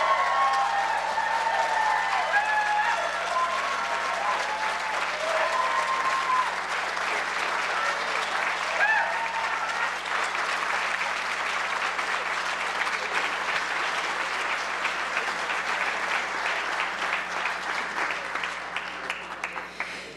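A seated audience applauding, with a few voices over the clapping in the first half. The applause thins and fades out near the end.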